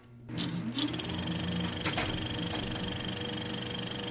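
Film projector sound effect: the motor winds up over the first second, then runs steadily with a fast, fine clatter and a steady high whine, with a couple of sharper clicks about two seconds in.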